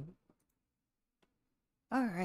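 A woman singing 'do do do' ends a syllable right at the start, then a near-quiet stretch with a few faint clicks of a computer mouse, and a long sung 'do' begins near the end.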